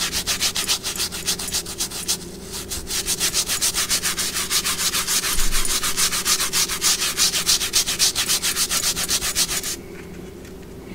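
Small stiff-bristled brush scrubbing wet, foamy woven fabric upholstery back and forth in rapid, even strokes, a quick rhythmic scratching that slackens briefly about two seconds in and stops just before the end. A steady low hum runs underneath.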